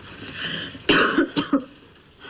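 A person coughing: a quick run of three or four short, sharp coughs about a second in.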